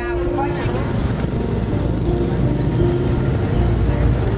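Busy city street ambience: motor traffic running steadily, with indistinct voices in the background.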